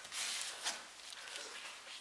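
Faint handling noise: a short rustle just after the start and a light tap less than a second in, then only faint rustling.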